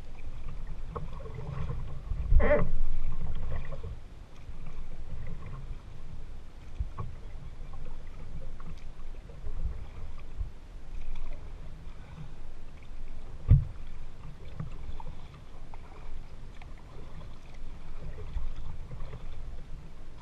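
Kayak paddling on open water: paddle strokes and water slapping the hull under a steady low rumble. There are scattered small knocks, a louder knock about two and a half seconds in and a sharp knock about thirteen and a half seconds in.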